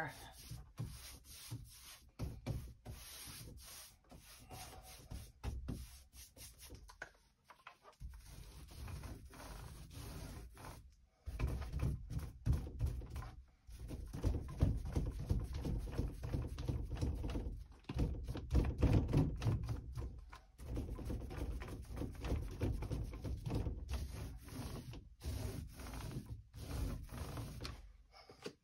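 Small microfiber paint roller and brush working primer onto a wooden door: soft rubbing strokes, patchy at first, then denser and louder back-and-forth rolling from about eleven seconds in, with brief pauses between passes.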